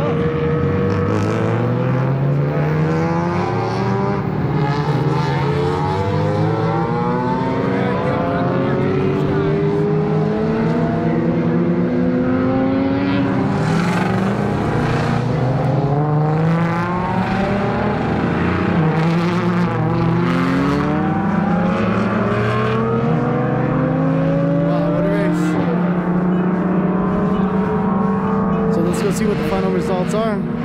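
Several race car engines running and accelerating, their notes rising in pitch again and again and overlapping one another.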